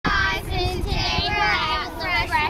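Several children singing together in unison.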